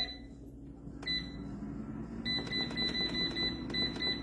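Digital air fryer's control panel beeping as its buttons are pressed: a single beep, another about a second later, then a quick run of short beeps as the setting is stepped along, over a low steady hum.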